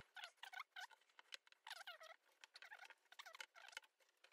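Near silence, with many faint, short, high-pitched chirps or squeaks throughout.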